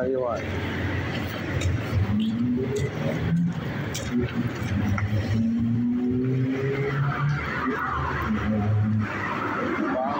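Car engine and road noise from a vehicle driving along a street, with a person's voice speaking over it now and then.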